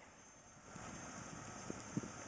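Faint, distant running of a Ford Explorer's engine in the mud, barely above the outdoor background, with a couple of small ticks near the end.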